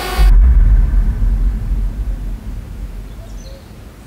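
A deep, low rumbling boom that comes in about a quarter of a second in and fades away slowly over the next few seconds, the kind of sub-bass hit used to close a promotional video.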